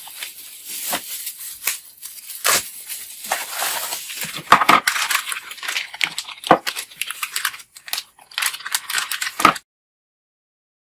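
Bubble wrap and a plastic bag crinkling and rustling as a boxed set of pedal covers is unwrapped by hand, with irregular crackles and a few sharp clicks and knocks of handling. The sound cuts off suddenly near the end.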